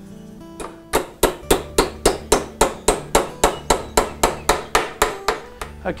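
Small hammer tapping tacks into the glued corner joint of a timber canvas-stretcher frame, a quick, even run of light blows about four to five a second, starting about a second in. Background acoustic guitar music plays underneath.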